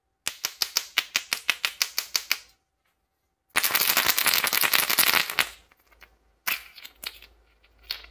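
Plastic surprise egg with small toys inside being handled: a quick run of sharp clicks, about six a second for two seconds, then a dense rattle for about two seconds as it is shaken, and a lone click near the end as its two halves come apart.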